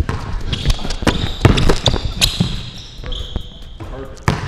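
Basketball bouncing and sneakers squeaking on a hardwood gym floor as players sprint and cut, with repeated sharp thuds of ball and feet and several drawn-out high squeaks, in a reverberant gymnasium.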